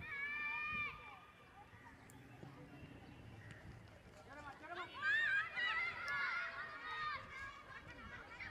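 High-pitched girls' voices shouting and calling out during play: one long held call at the start, then several overlapping shouts from about five seconds in.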